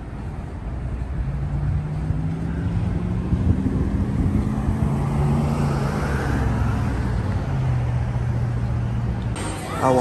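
Road traffic on a multi-lane city road, a steady low rumble with held low engine hums. It cuts off suddenly near the end.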